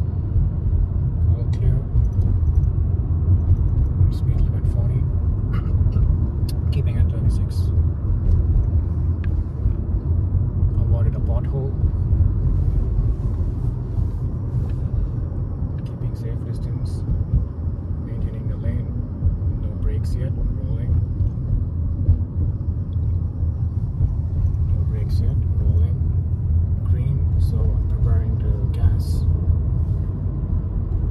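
Road noise inside a moving car's cabin: a steady low rumble of tyres and engine, with scattered faint clicks and knocks.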